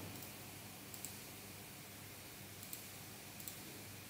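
A few faint, spaced-out clicks from operating a computer (mouse and keys) over a steady low hiss.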